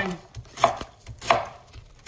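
Chef's knife slicing through a quartered green cabbage onto a wooden cutting board: two sharp cuts about two-thirds of a second apart, with a fainter one before them.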